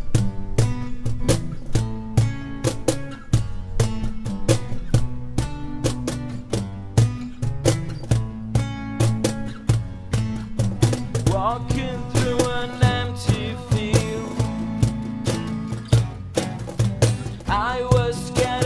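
Acoustic band playing an instrumental passage: strummed acoustic guitars over a bass guitar, with a cajon keeping a steady beat. A higher sliding melody line joins about two-thirds through and again near the end.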